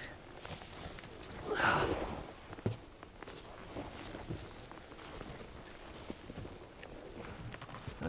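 Scuffing and rustling of a person crawling through a tight stone tunnel entrance: boots and knees shuffling on dirt and dry grass, clothing rustling, with a louder scrape about a second and a half in and a single sharp knock just before three seconds.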